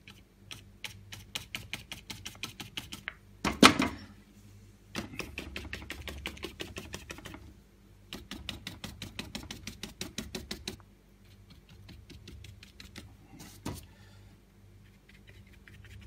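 Stiff, scratchy bristle brush dabbing acrylic paint onto canvas: runs of quick taps, several a second, in bursts with short pauses, with one louder thump about three and a half seconds in.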